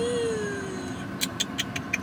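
A woman's drawn-out hum, slowly falling in pitch, then a quick run of about seven small metallic clicks as the links and clasp of a gold chain necklace are handled.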